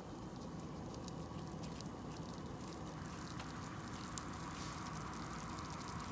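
Butter, corn syrup and sugar mixture heating in a small saucepan on a gas burner, sizzling and bubbling faintly as it comes up toward a boil: a steady soft hiss with scattered small pops.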